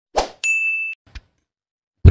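Edited-in sound effect: a short swish, then one bright electronic ding held for about half a second, then a faint click.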